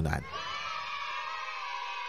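A crowd of voices cheering in one long, steady held shout, starting just after the talking stops.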